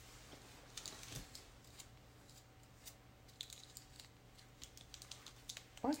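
Faint, irregular small clicks and ticks from hands working at a small dropper bottle, struggling to get its cap open.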